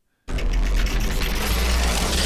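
Outro-animation sound effect: a loud rumbling noise that starts suddenly about a quarter second in, with a deep low rumble under a steady hiss.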